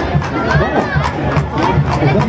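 Live band music with a quick, steady beat of about four strokes a second, mixed with a crowd's voices and shouts.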